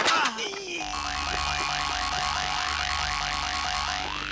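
Comedy sound effect: a short falling glide, then about three seconds of a wavering, warbling boing-like tone over a low pulsing throb. It scores a man teetering off balance on the brink of a fall.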